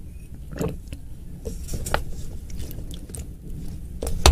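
Close-miked mouth sounds of drinking water from a glass: swallows and scattered small wet clicks.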